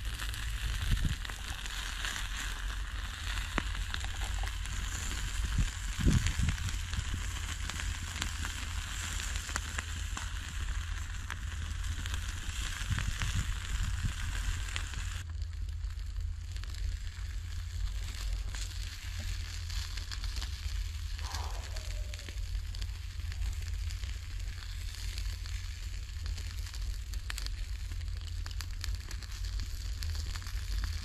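Field rat meat sizzling on a wire grill over a charcoal pit, with scattered crackles and pops; the sizzle drops to a softer hiss about halfway.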